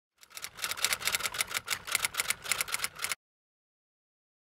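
Typewriter keys clacking in a fast, uneven run of about eight strikes a second for some three seconds, then stopping abruptly.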